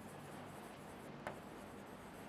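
Faint sound of a stylus writing on an interactive touchscreen board, with one light tap a little past the middle, over a steady low hum.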